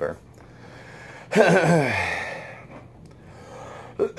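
A man's long voiced sigh, falling in pitch, starting about a second and a half in, over a steady low hum.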